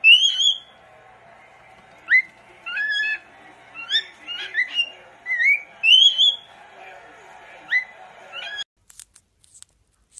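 Cockatiel whistling a string of short, upward-sliding notes, one or two a second, which stop abruptly near the end.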